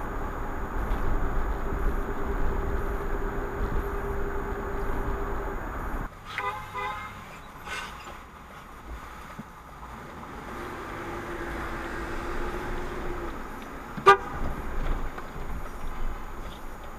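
Steady road noise with a low hum from a car driving on a highway, cutting off about six seconds in. Then car horns at a city intersection: a quick series of short toots, and near the end one short, loud honk.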